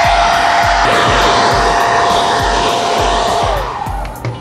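Handheld hot-air dryer blowing steadily with a high whine, drying and speeding the cure of a freshly applied leather coating. It is switched off about three and a half seconds in, and the whine drops away as it winds down.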